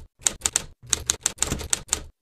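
Typewriter sound effect: a quick, uneven run of key clicks, about six a second.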